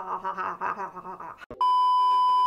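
A woman laughing, then about one and a half seconds in a loud, steady high beep starts abruptly: a TV test-pattern tone played as an edit transition over colour bars.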